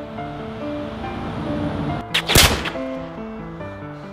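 A melody of held notes plays throughout, and a little over halfway through a single loud pistol shot cuts across it.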